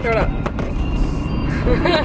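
Low, steady rumble of a car heard from inside its cabin, with short bits of young women's voices at the start and near the end.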